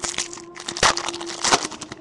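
Foil wrapper of a 2013 Bowman Chrome baseball card pack being torn open and crinkled by hand: a run of sharp crackles and rustles, loudest just under a second in and again about a second and a half in.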